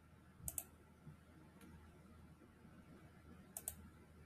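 Two computer mouse clicks, each a quick press-and-release pair, about half a second in and again near the end, over faint room tone.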